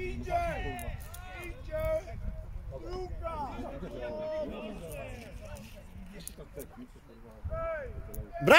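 Indistinct voices of players and spectators calling across a football pitch, over a steady low rumble.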